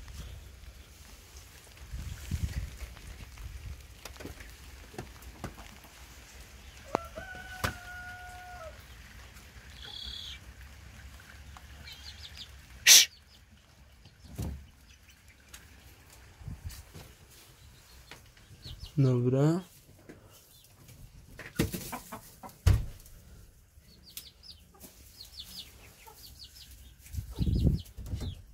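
Hens clucking softly in a coop, loudest in one short call about 19 seconds in, amid quiet rustling and handling noises. A short steady squeak comes about 8 seconds in and a single sharp click about 13 seconds in.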